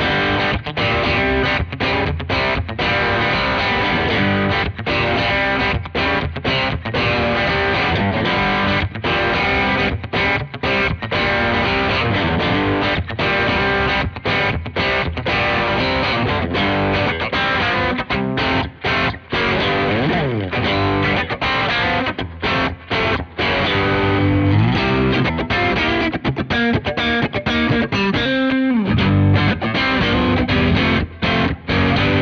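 Fender Player Lead II electric guitar, two single-coil pickups, played through a Fender Pugilist distortion pedal: a distorted riff of chords and single notes, with one sliding note about two-thirds of the way through.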